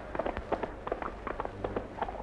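Hoofbeats of several ridden horses on the ground: a quick, irregular run of sharp clicks.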